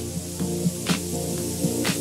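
Electronic music from a DJ mix: a repeating pattern of held notes with a sharp hit about once a second, over a steady hiss of noise.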